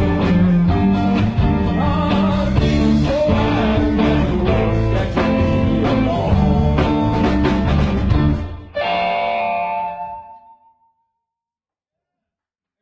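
Live blues-rock band with electric guitars, bass and drums playing loudly, then ending the song on a final chord that rings out and fades away about three-quarters of the way through.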